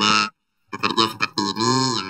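Speech only: a person talking in short phrases, with a brief pause early on.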